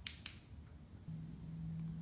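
Two quick, faint clicks, then a low steady hum that starts about a second in.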